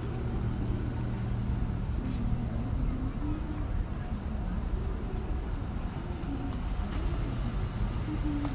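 Road traffic on a street alongside: cars running and passing, a steady low rumble of engines and tyres.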